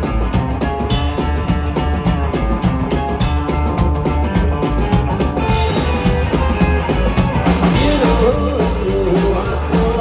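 Live rock-and-roll band playing: a Gretsch hollow-body electric guitar over a steady drum beat and a heavy bass line.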